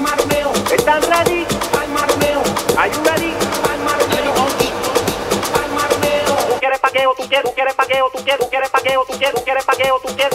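Latin and Afro tribal tech-house dance music played in a DJ set: an even percussion beat under layered melodic parts, with no heavy kick drum. About seven seconds in, the bass drops away, leaving short pitched stabs on the beat.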